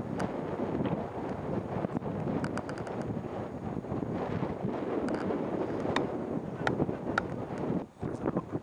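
Wind buffeting the microphone, a steady rumbling noise, with a few scattered sharp clicks.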